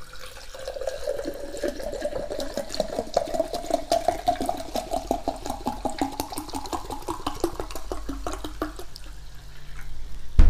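Sparkling water poured from a plastic bottle into a glass: a steady gurgling pour whose pitch rises as the glass fills, with a fine crackle of fizzing bubbles, stopping near the end.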